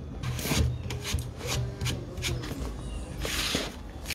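Handling noise on a phone's microphone: fingers rubbing and tapping on the phone, a scatter of small clicks with a brief rustle near the end.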